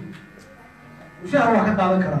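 A faint steady electrical buzz through a short pause, then a man's voice starts up loudly again about a second and a half in.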